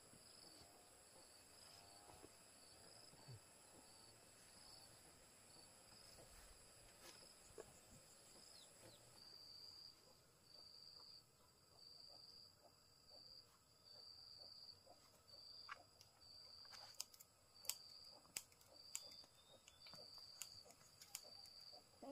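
Near silence with faint insect sounds: a steady high shrill at first, then from about nine seconds in a high chirp repeating about once a second. A few faint clicks come near the end.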